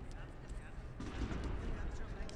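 Voices calling out across a large sports hall over a steady low rumble, with a few short knocks.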